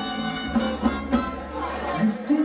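Live rock band playing: electric guitars and bass holding sustained chords, with a low bass note held from about half a second in and a few sharp hits over it.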